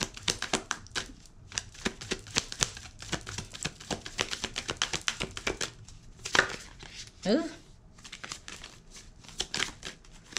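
A deck of oracle cards being shuffled by hand: a fast, uneven run of small card slaps and slides that goes on throughout.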